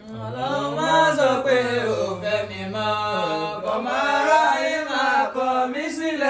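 A man chanting an Islamic supplication in Yoruba and Arabic in long, drawn-out sung lines that slide and waver in pitch. The low notes drop away about three seconds in and the chant carries on higher.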